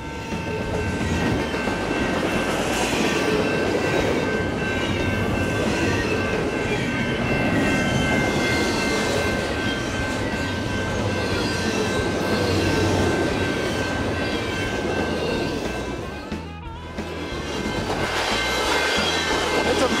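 Loud, steady rolling noise of a long freight train's cars passing close by on the rails, with thin, steady high-pitched tones over the first two-thirds. The sound dips briefly about three-quarters of the way through, then the passing noise comes back.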